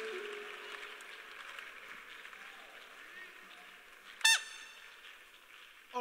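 Faint, fading murmur of a congregation praying in a large hall, with one short, high cry that falls in pitch about four seconds in.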